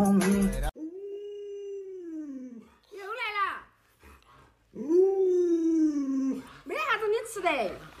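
Alaskan malamute making drawn-out howling, 'talking' calls, about four of them: the two long calls slide down in pitch at the end and the two short ones waver up and down. Before the calls, music plays briefly and stops abruptly.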